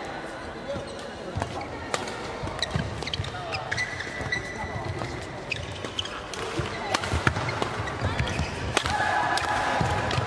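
Badminton rally in a large sports hall: a string of sharp racket-on-shuttlecock hits, with players' footwork on the court. Crowd chatter and hall echo run underneath.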